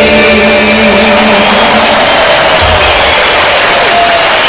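A live band's closing chord ringing out and fading, with a large arena crowd cheering and starting to applaud as the song ends.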